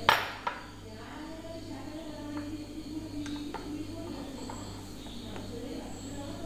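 A plastic spoon clinks sharply against a glass cup just as it begins and again half a second later, then gives a few light taps and scrapes as it stirs cocoa powder in the cup.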